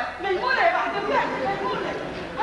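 Actors' voices speaking on a stage: lively spoken dialogue, with a hall's reverberation.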